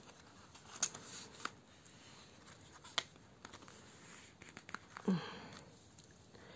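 Quiet handling of a plastic zipper pouch holding coins and a banknote: faint rustling with a few sharp clicks, and a brief low murmur of voice a little after the five-second mark.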